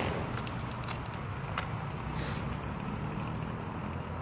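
Steady low outdoor background rumble with a few faint ticks scattered through it.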